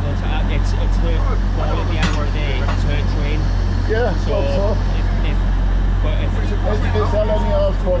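Steady low hum of a stationary LNER Azuma train standing at the platform with its doors open, with indistinct voices over it.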